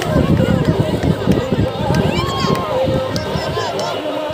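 Several people talking over one another, with a dense, uneven low rumble close to the microphone.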